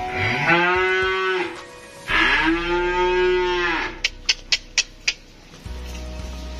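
Cattle mooing: two long moos of about a second and a half each, followed by five quick sharp clicks.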